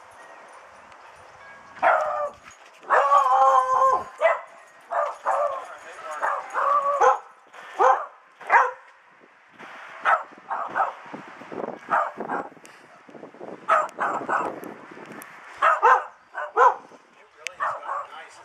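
Dog barking over and over in short pitched barks, with one longer drawn-out bark about three seconds in.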